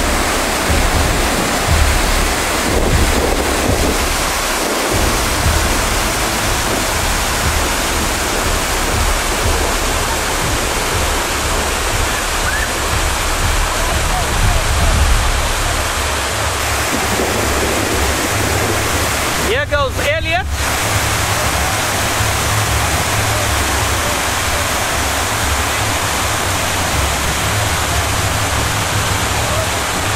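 Whitewater rapids rushing loudly and steadily. About twenty seconds in there is a brief shout.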